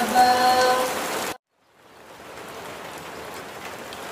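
A sung Quran recitation holds its last note and cuts off abruptly about a second in. After a brief silence, a steady hiss of rain fades in and continues.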